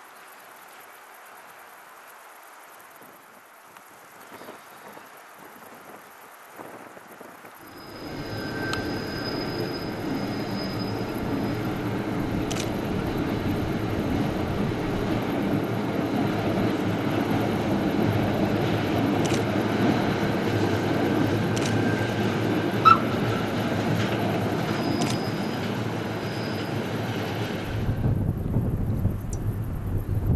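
Bernina Railway train running round a curve: a steady rumble of wheels on rail with thin, high wheel squeals now and then. It starts suddenly about eight seconds in after faint background noise and stops abruptly near the end.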